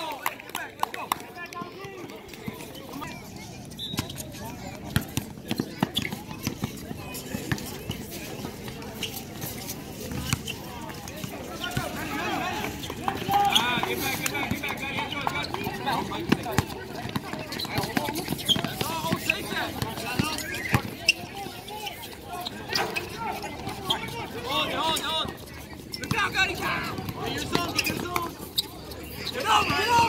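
Outdoor basketball game in play: players and onlookers calling out across the court, the voices busiest in the second half, over scattered short knocks of the ball bouncing and feet on the court.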